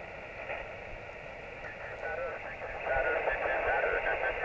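Amateur radio receiver on 40-metre single sideband: narrow, hissy band noise, with another operator's voice coming through faintly and growing stronger in the second half.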